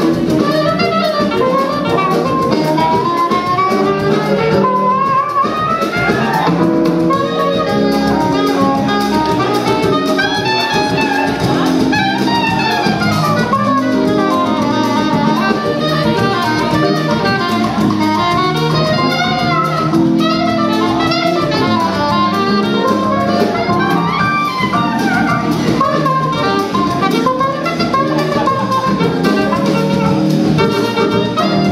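Live jazz band playing: a saxophone carries winding melodic lines over electric bass, keyboard and drum kit.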